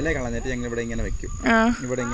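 A steady, high-pitched insect chorus in the forest undergrowth, with people's voices over it, one calling out about one and a half seconds in.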